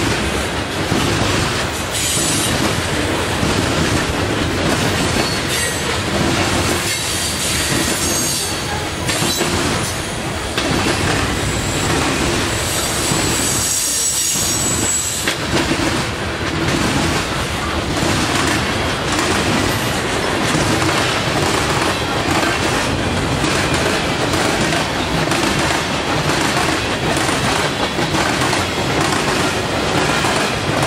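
Freight train cars rolling past at close range: a steady rumble with rhythmic clicking of wheels over rail joints, and high-pitched wheel squeal coming and going, longest near the middle.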